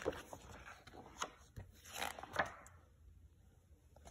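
Pages of a large picture book being turned and pressed flat by hand: several short paper rustles and flaps in the first two and a half seconds, then quieter.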